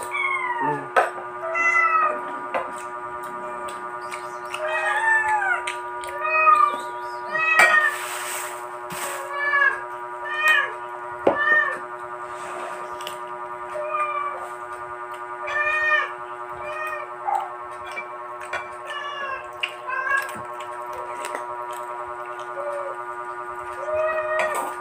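A domestic cat meowing again and again, short rising-and-falling calls about once a second, over a steady droning background tone.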